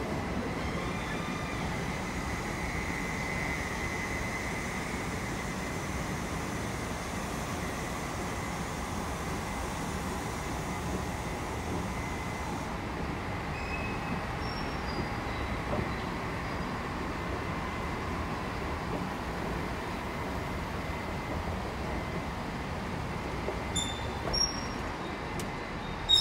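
Steady rumbling drone of a railway station platform, with trains standing at the platforms and station machinery running, and a faint steady high tone running through it.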